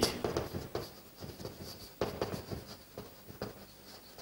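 Chalk writing on a blackboard: a run of short taps and scratches as words are written out stroke by stroke.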